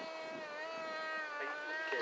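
Radio-controlled model MiG-29 jet running as it rolls away down the runway: a steady pitched drone with a thin high whine that falls in pitch over the first second and a half, then holds.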